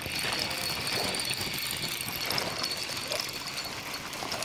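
Spinning reel being cranked steadily, reeling in a hooked fish.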